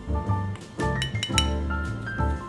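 A quick cluster of bright metallic clinks about halfway through, from a metal measuring cup and sieve being handled against a glass mixing bowl, over background music with a steady beat.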